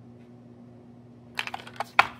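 A 3D-printed plastic box being set down on a granite countertop: a quick run of light clicks and knocks near the end, finishing in one sharp knock.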